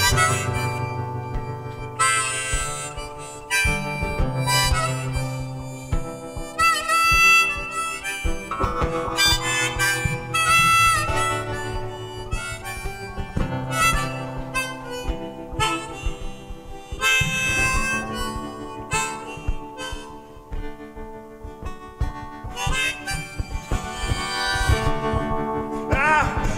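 Harmonica playing a solo melody with bent notes over strummed acoustic guitar chords, an instrumental break between verses.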